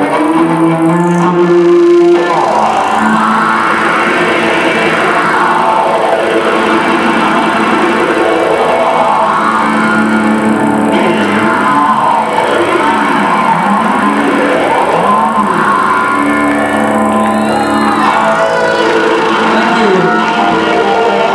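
Live rock band music: electric guitar sweeping up and down in pitch through effects over sustained low notes from cellos and keyboard.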